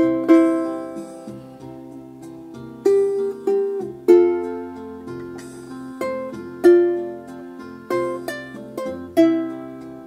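Solo ukulele playing a traditional Hawaiian tune: a plucked melody with chords, each note or chord struck sharply and left to ring and fade before the next.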